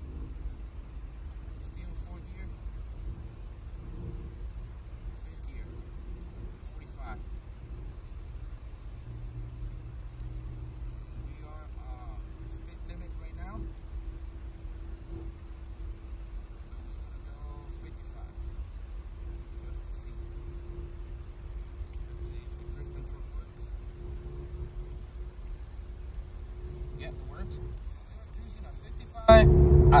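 Inside the cabin, a VW Mk4 TDI's 1.9 ALH diesel engine and road noise give a steady low rumble with a faint steady hum as the car pulls in third gear. The automatic is coded to economy-mode low shift points, which hold the engine at about 2,000 rpm.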